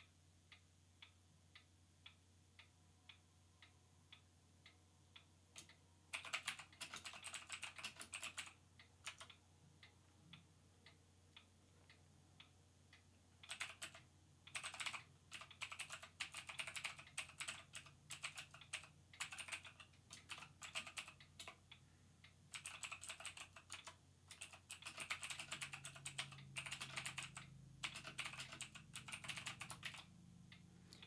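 Typing on a computer keyboard in several bursts of quick keystrokes, with short pauses between them. Before the typing starts, faint ticking comes about twice a second.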